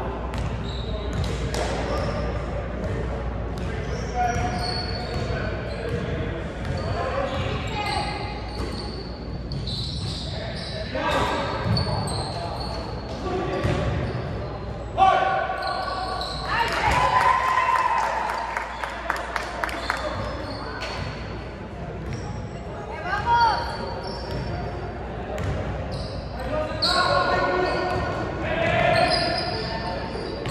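Basketball game in an echoing gym: the ball bouncing on the hardwood court, with players and spectators calling out. A single sharp bang about halfway through is the loudest sound.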